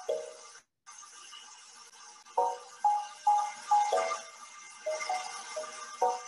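Tuned, struck percussion notes like a marimba, picking out a slow melody one note at a time, with a short ring on each. One note sounds at the start, then after a pause of soft hiss about eight more follow from a little past two seconds in. They come from the demonstration animation of a cement truck converted into a marimba-style instrument that plays a song.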